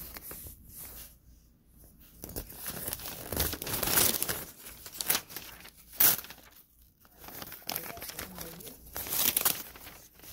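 Lined notebook paper being torn and crumpled by hand: irregular rustling and ripping that builds from about two seconds in, with one sharp rip about six seconds in and another busy stretch of tearing near the end.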